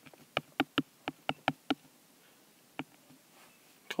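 Stylus tapping on an iPad's glass screen while handwriting a word: a quick, uneven run of sharp little clicks over the first couple of seconds, then a single click about three seconds in.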